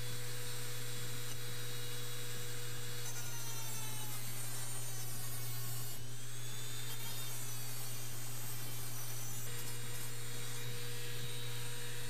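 Mini drill driving a thin cutoff wheel through a flexible shaft at high speed, cutting the edge of a resin-bonded paper board. A steady motor whine and hum, whose pitch wavers through the middle few seconds as the wheel bears on the board.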